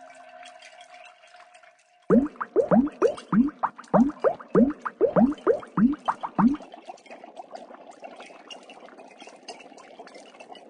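Water sounds: a run of about a dozen loud rising bloops, roughly three a second, like water glugging, then a steady trickle of pouring water.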